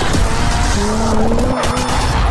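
Intro music with a racing-car sound effect laid over it: a pitched car sound slides slightly upward through the middle, above a steady music bed.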